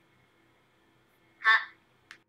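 Quiet room tone, then a man says a single short syllable, "ha", about one and a half seconds in.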